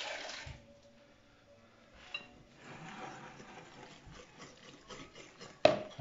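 A kitchen tap runs briefly and is turned off about half a second in: water being drawn to top up a batter. After that come faint clinks and scraping of utensils, and a single sharp knock near the end.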